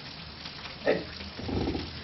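A pause in a classroom lecture: a steady hiss of room noise, broken by a man's single short spoken word about a second in and a brief low murmur just after it.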